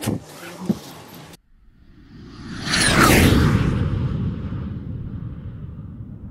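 Train carriage interior noise with a brief voice, cut off abruptly about a second in. Then a whoosh sound effect swells up with falling pitch sweeps, peaks about halfway through and slowly fades.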